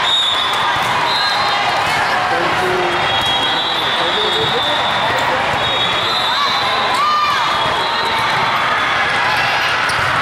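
Busy volleyball tournament hall: a constant babble of players' and spectators' voices, with volleyballs being struck and bouncing on the courts.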